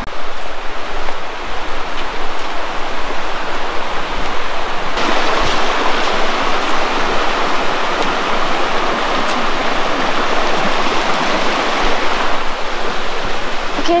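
Fast-flowing creek rushing over rocks, a steady loud rush of water that grows louder about five seconds in.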